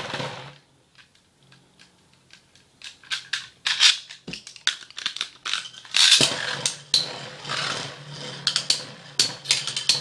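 Two metal Beyblade spinning tops (Thief Phoenic E230GCF and Pirates Orojya 145D) just launched into a plastic stadium, spinning with a low steady hum. They clash with sharp clicks, a few at first, then a dense run of hits from about six seconds in.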